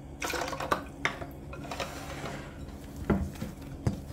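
A hand kneading and pressing soft pastry dough in a glass mixing bowl: soft squishing and rustling with light clicks of the glass, and two sharper knocks of the bowl, about three seconds in and just before the end.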